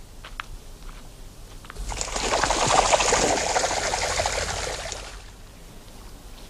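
Water splashing and churning at the lake's edge: a crackly rush that swells up about two seconds in and dies away over about three seconds. A few faint ticks come before it.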